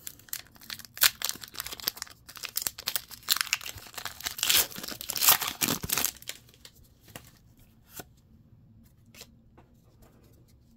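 Foil wrapper of a Pokémon card booster pack being torn open and crinkled by hand: a dense run of crackling rips for about six seconds, then only a few faint clicks and rustles.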